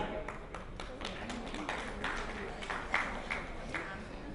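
Light, scattered applause from a seated audience in a hall: irregular individual claps over a faint room noise.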